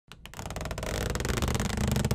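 Intro sound for an animated title sequence, building from silence: a rapid, even ticking over a low rumble that swells steadily louder.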